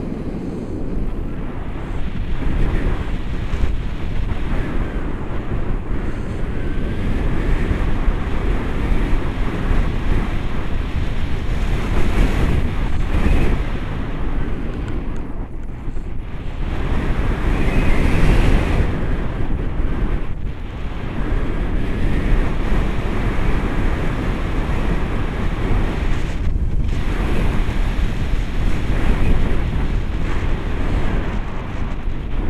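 Wind rushing over the microphone of a camera on a tandem paraglider in flight: a loud, steady buffeting that swells and eases, heaviest in the low end.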